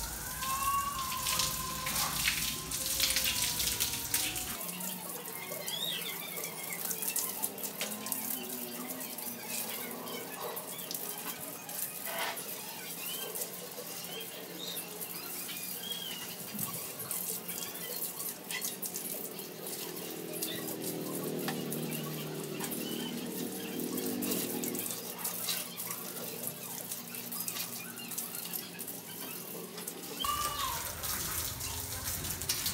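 Water from a garden hose spraying and splashing onto a mountain bike's frame and wheels as it is rinsed, a steady rush of running water.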